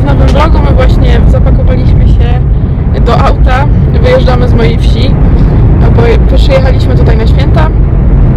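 A woman talking inside a moving car's cabin, over a loud, steady low rumble of road and engine noise.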